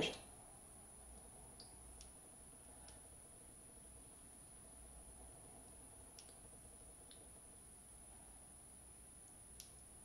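Near silence: room tone with a faint steady high-pitched whine and a few faint, scattered small clicks, the sharpest one near the end.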